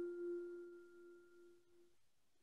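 The last note of a set of radio-network sign-off chimes: a single mellow, bell-like tone ringing out and fading away, gone just before two seconds in.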